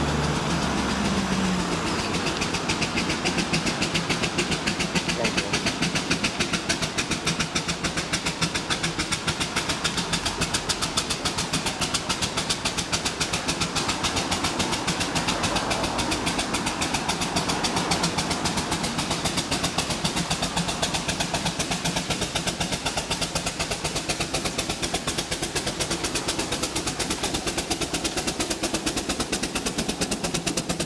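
Steam traction engine working on the road, its exhaust beating in a rapid, even rhythm as it comes closer, with cars passing and a car's engine rising at the start.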